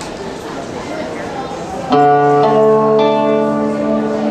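Three-string instrument made from a flat metal snow shovel, played like a guitar. After about two seconds of low room noise, its strings ring out in sustained notes, and the pitch changes twice as new notes come in.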